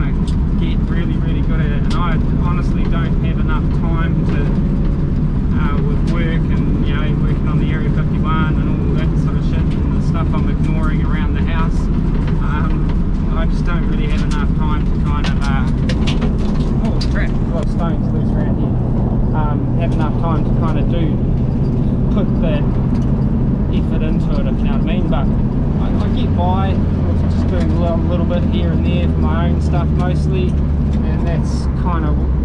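Interior drone of a Morris Minor's small four-cylinder engine and road noise inside the cabin while driving, heard under a man's talking. The low drone gets heavier near the end.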